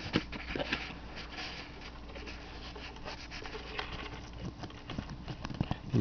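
Close handling noise of small paint-gun cleaning brushes and an engine temperature sensor being fumbled by hand right at the microphone: irregular light scratches, taps and clicks over a faint steady hum.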